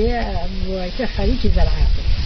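Speech: a woman talking, over a steady background hiss.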